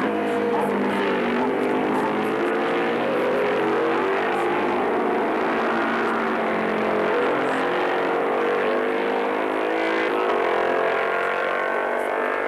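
Several racing motorcycle engines running together, their pitches slowly rising and falling against one another.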